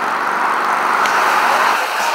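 Steady road-traffic noise, the hiss of tyres from passing cars, swelling slightly past the middle.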